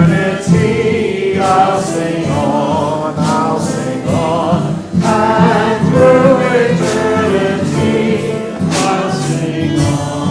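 Church choir singing with instrumental accompaniment and a steady beat.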